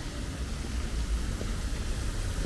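Steady hiss of an ornamental fountain's water jets splashing, over a low steady rumble.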